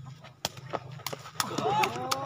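Several sharp smacks of a sepak takraw ball being kicked and struck during a rally, the loudest about half a second in. From about a second and a half, several voices shout and whoop together as the point is won.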